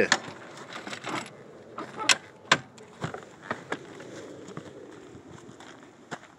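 Footsteps crunching through dry leaves and grass, irregular steps and rustles about every half second, with light handling noise from the phone.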